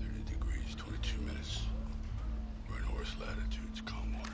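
Hushed, whispered voices over a low, steady music drone.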